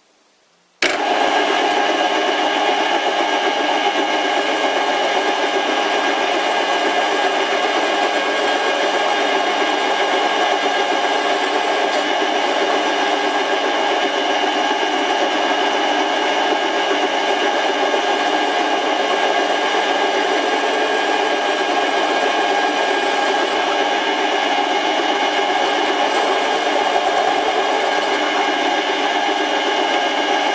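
Metal lathe running and turning down a steel MT3 arbor, starting abruptly about a second in and then going on as a steady whine of many tones over a hiss. The arbor steel cuts poorly, which the machinist suspects is because it is hardened.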